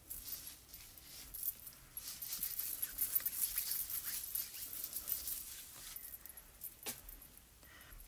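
A Clorox disinfecting wipe rubbing over a plastic stencil, giving a dry, scratchy rustle that comes and goes, with a single click near the end.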